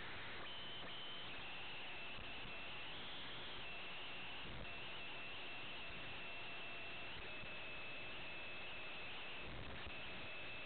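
Faint steady hiss of an airband radio receiver on a quiet frequency between transmissions, with a thin high whistle that wavers and steps slightly in pitch.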